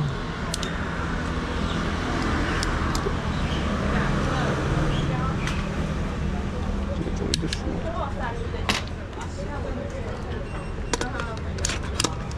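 Steady street-traffic rumble with indistinct voices in the background, and several sharp clicks from a camera gimbal's arms being handled and locked.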